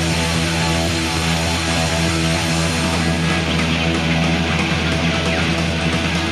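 Rock band playing an instrumental passage live: electric guitars holding steady, sustained chords over bass guitar, with no singing. Lo-fi sound, a radio session taped off air onto cassette.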